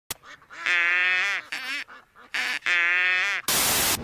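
Two long, nasal buzzing tones about a second apart, each held at one pitch and bending at its end, followed by a half-second burst of static-like hiss.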